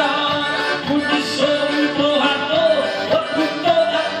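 A man singing a repente verse to a diatonic button accordion. The melodic voice line moves over the accordion's steady chords.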